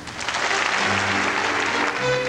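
Theatre audience applauding, starting just after a brief dip in the music, while the ballet orchestra keeps playing softly underneath.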